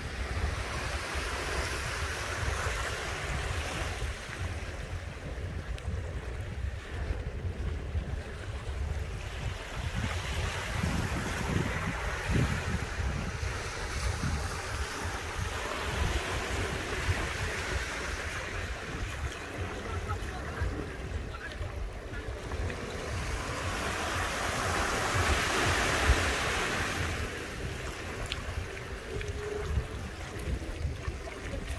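Small waves washing onto a sandy shore, the hiss of each surge rising and falling every several seconds, loudest near the end. Wind buffets the microphone with a steady low rumble.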